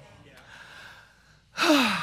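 A man's loud, heavy sigh, a breath out with his voice falling in pitch, about one and a half seconds in. It follows a faint, breathy lull.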